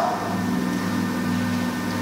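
A pause in speech filled by steady room tone: a constant low hum with a few faint held tones under a light hiss.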